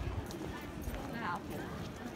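Hard steps clopping on cobblestone paving, a few irregular clacks, with passers-by's voices briefly about a second in.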